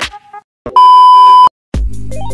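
A loud, steady electronic beep at a single pitch, lasting under a second in the middle, set off by brief silences on either side. The tail of an electronic music beat comes before it, and new music starts near the end.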